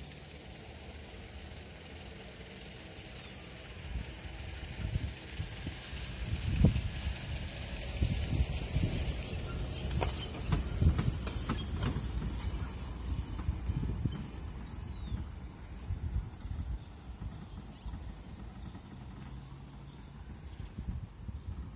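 Wind gusts buffeting the phone's microphone in irregular low rumbles and thumps, strongest from about four seconds in until about fifteen seconds, with a few faint high chirps above.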